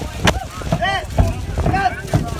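Marching street band playing on the move: drum beats and a short, high, arching note repeated about once a second, with wind buffeting the microphone.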